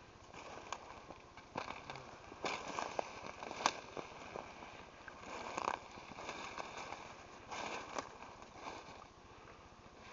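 Footsteps through forest undergrowth: ferns and brush swishing past, dead leaves and twigs crackling and snapping underfoot in irregular steps.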